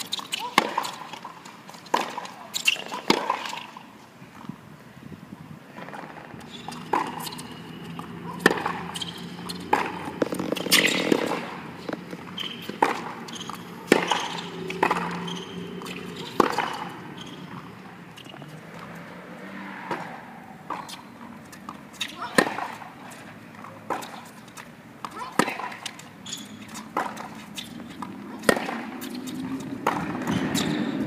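Tennis balls struck by rackets and bouncing on a hard court during a baseline rally: sharp pops at irregular intervals, a few every couple of seconds.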